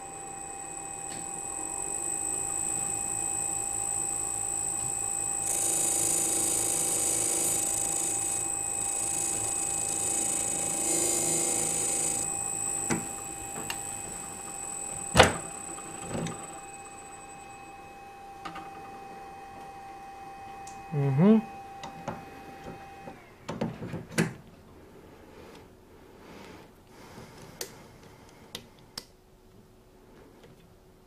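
The electric motor of an ADEMS sharpening machine runs with a steady whine, and the whine stops about three-quarters of the way through. From about six to twelve seconds in there is a hiss of manicure nippers being ground against the machine's 600-grit abrasive disc. A sharp click comes about halfway, and after the motor stops there are light clicks and knocks as the nipper holder is handled.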